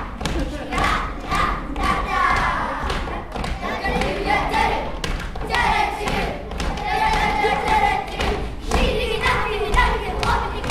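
A group of children stamping and stepping in rhythm on a wooden stage floor, many feet landing together in repeated thuds, with a group of children's voices calling out over the stomps.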